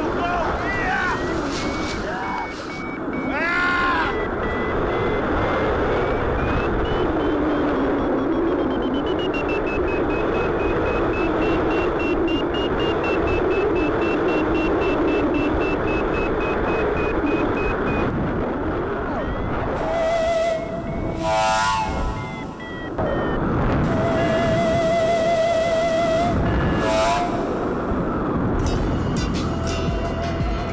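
Steady rush of wind on the microphone of a camera mounted on a paraglider in flight, with music over it.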